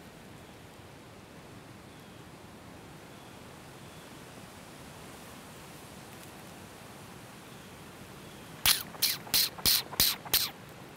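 Quiet woods: a faint steady hiss of outdoor background noise. Near the end, a quick run of six or seven short, sharp sounds close to the microphone.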